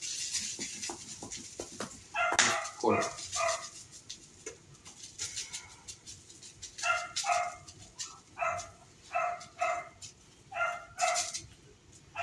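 A small dog barking in short, high yaps, mostly in pairs, several times over, with faint light clicks in the first couple of seconds.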